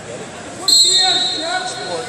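Referee's whistle: one short, high, steady blast that starts suddenly about two-thirds of a second in, with voices around it.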